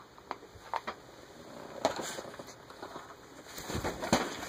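Faint handling noise: a few small clicks and knocks, then a low rumble near the end as the camera is moved about.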